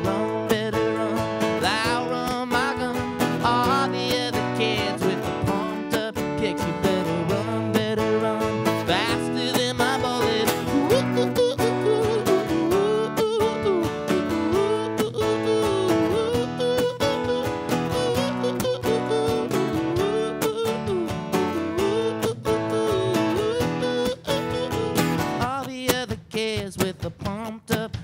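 Live band music: strummed acoustic guitar, a drum kit and an electric guitar playing together with a steady beat. Near the end the band thins out and drops back.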